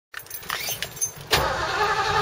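Keys jingling at the steering-column ignition, then a Ford Mustang's engine fires up suddenly about a second in and keeps running, pretty loud.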